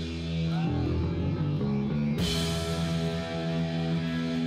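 Live hardcore punk band playing loud: held electric guitar and bass chords, then drums and cymbals come in sharply about two seconds in and the full band carries on.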